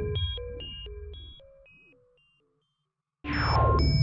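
ZynAddSubFX 'broke robot' synth preset sounding a note: a run of short stepping robotic bleeps, about three a second, over a low buzz, fading away by about halfway. A new note starts near the end with a fast falling sweep.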